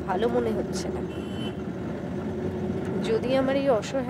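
Steady low hum of a car on the move, heard from inside the cabin.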